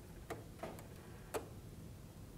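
A quiet pause with faint room tone and a few soft, irregularly spaced clicks.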